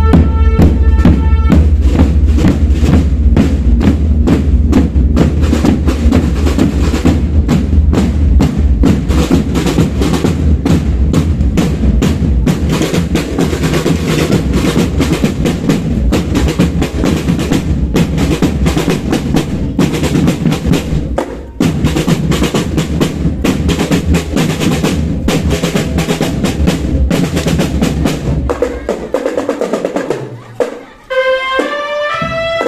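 Marching band drumline playing a fast, continuous cadence on snare and bass drums, with a short break about two-thirds through, then stopping about a second before the end. A few held high notes sound over the drums in the first second or so.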